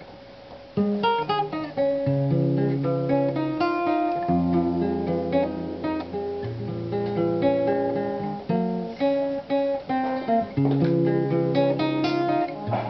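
Solo acoustic guitar playing a song intro, starting about a second in: plucked melody notes over ringing bass notes.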